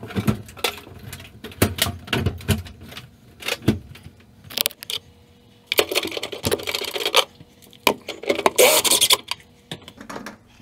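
Irregular knocks, clicks and scraping from hanging an over-the-range microwave under a wooden wall cabinet and working by hand at the mounting bolt holes inside the cabinet. There are two longer rough scraping stretches in the second half.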